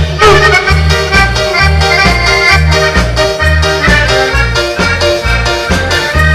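Live dance band playing a polka with accordion in the lead over an oom-pah bass that alternates between two notes about twice a second.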